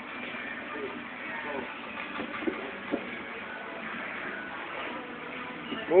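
Gym room noise with faint, distant voices in the background, and two short knocks about half a second apart a little before the middle.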